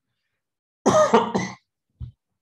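A man clearing his throat once, a short rasping burst in three quick pulses about a second in.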